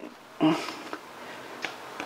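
A short breath sound about half a second in, then the soft rustle of a book's paper pages being turned, with a small click near the end.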